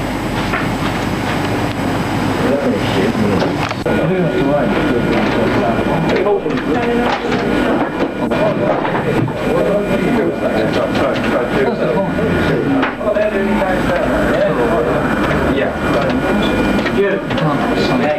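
Indistinct talking in the background, too muddled to make out words, over a steady low electrical hum and a faint steady high whine.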